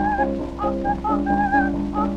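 A coloratura soprano sings a quick passage of short, high notes with vibrato over a sustained accompaniment. It comes from a 1906 acoustic recording, so the voice sounds thin and whistle-like, with a steady low hum beneath.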